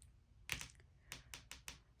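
Long fingernails tapping on a tarot card: about six faint, light clicks in quick succession over a little over a second.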